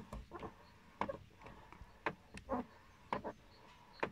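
Lada Vesta door creaking and squeaking as it is swung back and forth: a string of short, irregular squeaks and clicks, one or two a second. The owner is unsure whether it comes from the hinges or from the plastic door check rubbing plastic on plastic, and silicone spray has not cured it.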